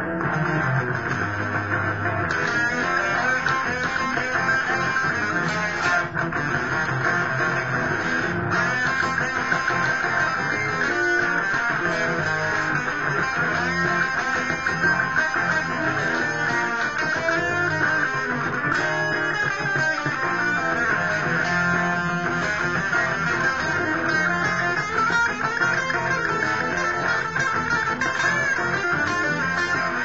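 Sunburst Fender Stratocaster electric guitar with a maple neck, played without a break through a rock-blues instrumental passage.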